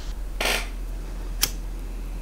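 Microphone handling noise while a too-quiet mic is being sorted out: a short rustle about half a second in and a single sharp click near the middle, over a steady low electrical hum.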